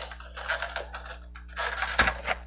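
Plastic action-figure necks being bent by hand, giving small scattered clicks and rustles of handling, with a sharp bump against the microphone at the end.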